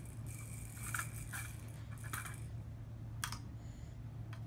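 Small plastic toy car clicking and rattling as a toddler pushes it along the floor: a handful of short, light clicks.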